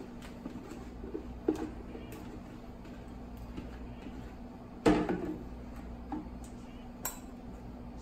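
Sliced golden beets sliding off a flexible plastic cutting sheet and dropping into a glass bowl: scattered light knocks and clinks, with one louder knock about five seconds in.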